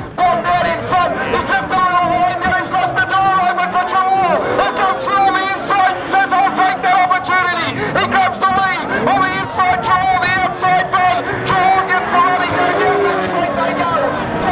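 Several speedway sidecar engines racing together, loud and continuous, with the engine note repeatedly dipping and climbing again.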